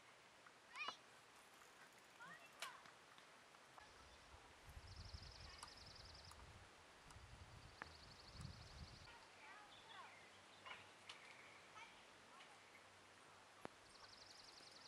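Near silence outdoors: a few faint chirps and a rapid, high ticking trill, heard twice about five and seven seconds in, over a low rumble through the middle seconds.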